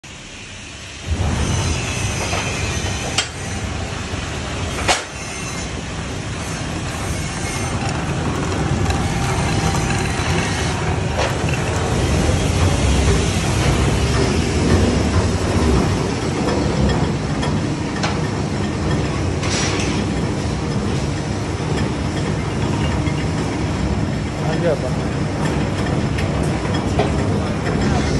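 Electric centrifugal sifter with brush system running, a steady mechanical rumble from its motor and belt-and-chain drive that starts suddenly about a second in. Two sharp clicks come a few seconds later.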